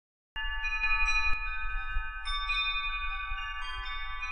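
Intro sting of shimmering chime tones over a low rumble. Many bell-like notes ring together from about half a second in, a second layer of chimes joins about two seconds in, and the sound rings on until it fades.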